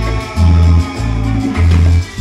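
Live Latin band music amplified through a PA, led by a heavy bass line in long pulses about every half second, with guitar and keyboard over it.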